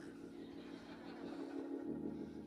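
Soft sustained keyboard chord held in the background, its lowest note dropping out near the end.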